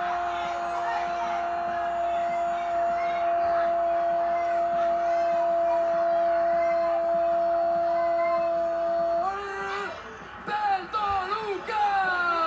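Spanish-language football commentator's goal call: one long held 'gooool' that drops in pitch at first, then holds steady for about nine seconds and lifts briefly before breaking off. Excited commentary follows near the end, with a faint crowd underneath.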